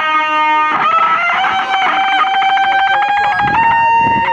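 Electric guitar played through a small Vox amplifier: a long held lead note with a fast regular flutter, then a bend up to a higher sustained note near the end.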